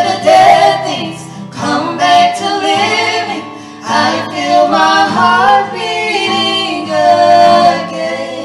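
Two women singing a worship song together into microphones, accompanied by a strummed acoustic guitar.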